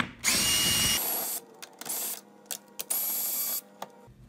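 Drill driver with a socket on an extension backing out the screws that hold the ottoman to a recliner mechanism, running in bursts. There is a run of about a second that whines up to speed as it starts, then a short burst, then another run of under a second, each stopping abruptly.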